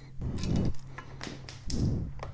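Small hand ratchet clicking in short irregular bursts with light metal clinks as the front brake master cylinder clamp bolts are backed out of the handlebar.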